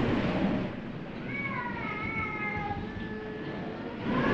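A single drawn-out, high-pitched cry, gently falling in pitch and lasting about a second and a half, over the steady hiss of an old recording.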